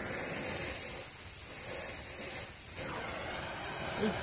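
Oxy-acetylene torch flame hissing steadily as it is held on a small ring magnet to heat it.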